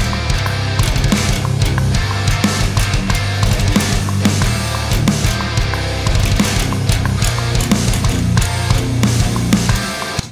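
Heavy metal riff: distorted rhythm guitar and programmed drums with an electric bass part playing along, the bass notes strong and steady under regular drum hits. The music stops sharply at the end.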